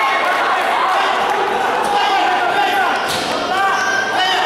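Spectators in a hall shouting and calling out to the fighters, many voices overlapping, with one sharp knock about three seconds in.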